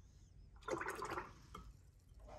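Watercolour brush swished in a jar of rinse water: one short, faint splashy swirl under a second long, about two-thirds of a second in, as the brush is wetted to lift paint.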